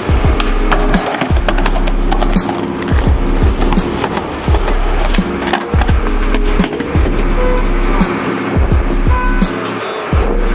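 Music with sustained bass chords, over skateboard sounds: urethane wheels rolling on pavement and sharp clacks of the wooden deck striking the ground.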